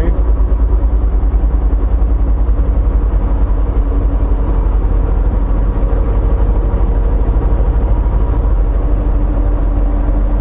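Semi-truck's diesel engine and road noise heard inside the cab while driving: a steady, loud, low drone, with a faint engine note coming through more in the second half.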